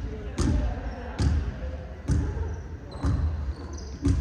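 Basketballs bouncing on a hardwood court, about one sharp bounce a second, each echoing through the large hall.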